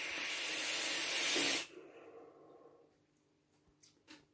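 A long draw on a vape's rebuildable dripping atomizer fired at 70 watts: a hiss of air and vapour that grows a little louder for about a second and a half, then stops sharply. A softer breath follows as the vapour is blown out.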